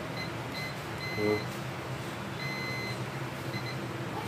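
A multimeter's continuity beeper, chirping in short, irregular, high-pitched beeps, a few held slightly longer, as the test probes make and break contact on a rice cooker's thermal fuse leads during a continuity check.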